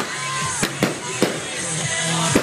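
Fireworks bursting: about four sharp bangs within two seconds, over music with steady tones.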